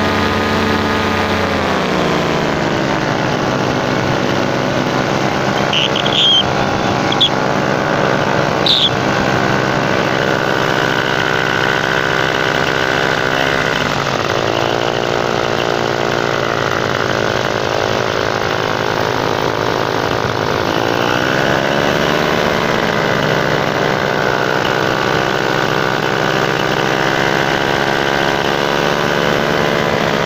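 Paramotor engine and propeller running in flight. The engine note drops about two seconds in, then dips and swells again twice further on as the throttle changes, with air rush over the microphone.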